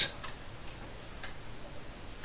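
Faint, regular ticking, about one tick a second.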